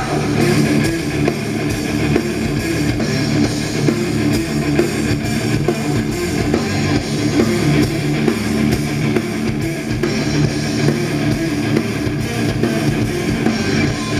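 A metal band playing live, with electric guitars over a drum kit in an instrumental passage. The loudness holds steady throughout.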